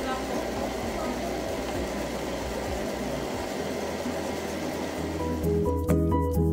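Stand mixer running with its dough hook churning a stiff, dry bulgur mixture for meatless çiğ köfte: a steady motor hum with the dense mix turning in the steel bowl. Near the end, background music comes in.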